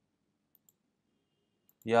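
Two faint computer-mouse clicks in quick succession about half a second in, selecting a date in the calendar. Near the end a man starts speaking.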